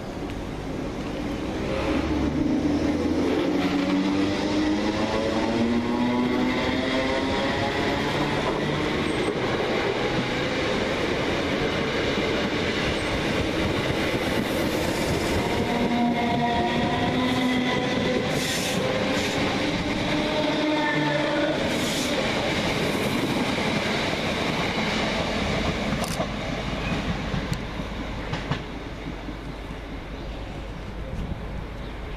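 Greater Anglia Class 321 electric multiple unit pulling away and accelerating past, its motors whining up in pitch over the first several seconds. Then come a steadier run with a few clanks and clicks from the wheels, and the sound falls away as the last carriage clears, about three seconds before the end.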